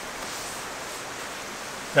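Steady, even outdoor background hiss with no distinct events; the announced opening of the tent's other side gives no zip or rustle that stands out.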